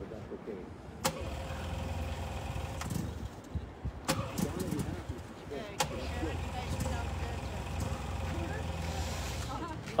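A vehicle engine running with a steady low hum that sets in about a second in, alongside faint distant voices and a few sharp clicks.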